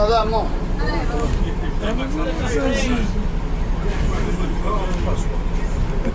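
Bus engine running steadily as it drives along, heard from inside the cabin, with passengers' voices talking over it.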